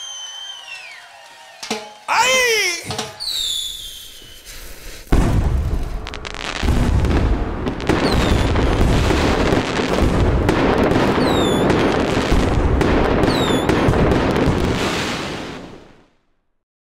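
Fireworks sound: a sudden dense run of bursts and crackling begins about five seconds in, with several short high whistles through it, and fades out at the end.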